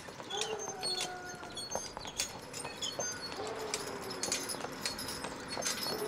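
Hooves of a pair of Percheron draft horses clip-clopping on asphalt at a walk as they pull a small trailer along the road.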